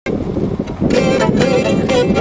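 A Black Sea kemençe being bowed, its notes coming back in about a second in after a moment of unpitched background noise.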